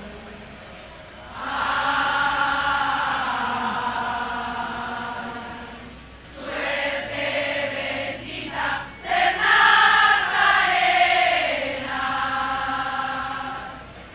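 Many voices singing a religious hymn together in long held phrases, with short breaks between them.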